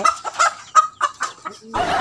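A chicken giving a handful of short clucks, followed near the end by a sudden steady rush of noise.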